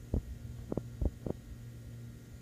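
A steady low hum, with about five short, soft low thumps in the first second and a half, typical of a handheld phone's microphone being bumped as it is moved.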